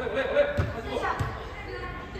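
A football thudding twice as it is kicked during play, about half a second and a second in, amid echoing shouts and voices in a large indoor sports hall.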